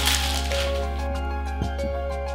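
Plastic wrapping crinkling as a hand grabs it, over the first half second or so, with gentle background music playing throughout.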